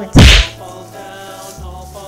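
A single sharp whip-crack sound effect about a quarter second in, short and much louder than anything else, over light background music.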